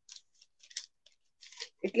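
Newspaper being folded and pressed by hand: a few short, faint, crisp rustles of the paper.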